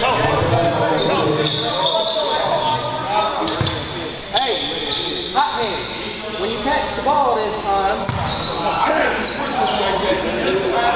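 Players and spectators talking, with a basketball bouncing a few times on a hardwood gym floor, over short high squeaks.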